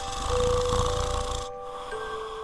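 A man snoring: one noisy in-breath snore lasting about a second and a half, the loudest sound here, over soft background music of held notes.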